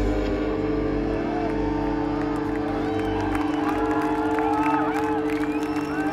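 Electric guitar droning on two steady held tones at a rock concert, over a crowd cheering, whooping and whistling, with more whoops and whistles from about three seconds in.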